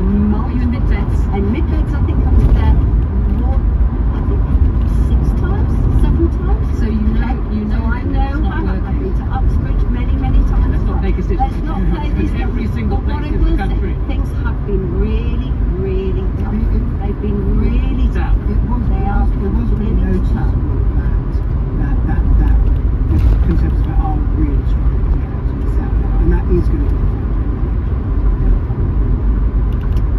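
Steady engine and tyre rumble heard from inside the cabin of a Rover 25 cruising along a road, with faint voices from the car radio beneath it.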